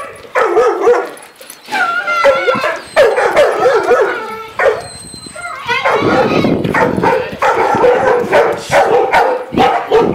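Several dogs barking repeatedly in short sharp barks, mixed with yips and whining; the barking is densest in the second half.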